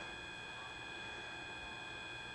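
Faint, steady background hiss with a few thin, constant high tones: the room tone and electrical noise of the recording setup, with no distinct event.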